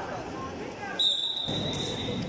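A referee's whistle is blown once, starting suddenly about halfway through as one steady high note that lasts about a second and fades; it signals the start of the wrestling bout. Voices and hall chatter carry on underneath.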